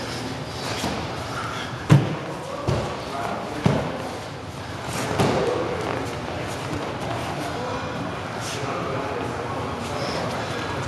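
Dull thuds of bodies and limbs hitting foam gym mats during grappling: three sharp ones a couple of seconds in, the first the loudest, with scuffling on the mats between.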